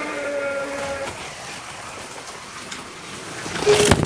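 Scalextric slot cars running on the track, a steady whirring hiss, with a drawn-out voice fading out at the start and a sudden loud noise just before the end.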